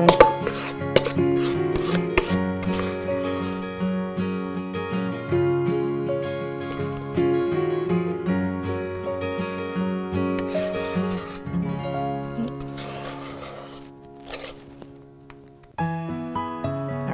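Soft background music of held notes, fading down near the end, over a metal spoon scraping thick cake batter from a stainless steel mixing bowl, with scattered clicks of the spoon against the bowl.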